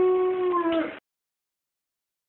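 The opening theme music ends on one long held note, which dips slightly and then cuts off about a second in.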